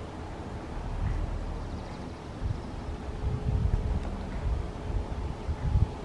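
Wind buffeting the microphone: an uneven low rumble that swells and fades.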